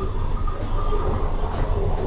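Steady low rumble with a hiss over it, picked up by a security camera's microphone, with faint held musical tones over the top.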